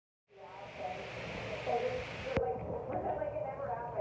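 Indistinct, unintelligible talk over a steady hiss; a little over halfway through the hiss cuts off abruptly with a click, and the low talk carries on.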